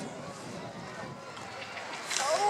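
Indistinct background voices, with the hoofbeats of a pony cantering on a sand arena and taking a jump.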